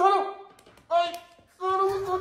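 A man's exaggerated cries of pretend pain, three short high-pitched wails, as his supposedly stiff neck is turned.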